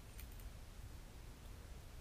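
Near silence: low room tone with a few faint clicks about a quarter second in.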